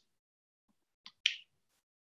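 Near silence broken by a brief sharp click about a second in, with a fainter tick just before it.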